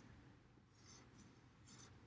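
Faint strokes of a marker on a whiteboard as a letter is written, heard in two short stretches, about half a second in and near the end, against near silence.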